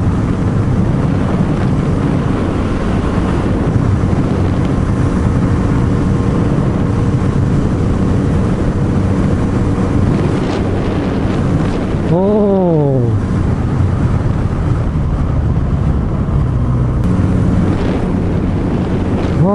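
Kawasaki Z900RS inline-four engine running steadily under way, with wind noise on the microphone. About twelve seconds in, a brief tone rises and falls in pitch once.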